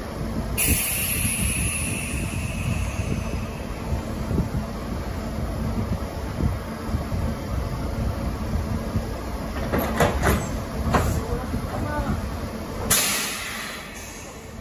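Kintetsu electric trains coupling: a train creeps up to a standing set over a steady low hum, with a loud hiss of air released early on that fades over a couple of seconds, then sharp metallic knocks of the couplers meeting around ten and eleven seconds, and a second short blast of air near the end.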